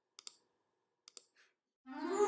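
Near silence broken by two pairs of short, sharp clicks about a second apart. Music starts just before the end.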